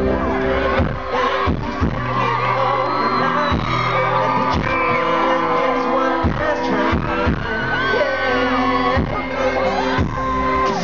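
Live pop music from a male vocal group: a man singing over a backing track with sustained chords and a steady drum beat, heard over the concert sound system from within the audience.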